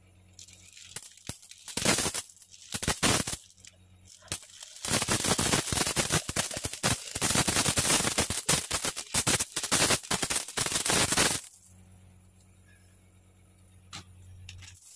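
Coins poured from a mug onto a heap of coins, clinking and jingling: a few short spills in the first three seconds, then one long steady pour of about six seconds that stops suddenly. The coins are mostly Singapore one-dollar and fifty-cent coins.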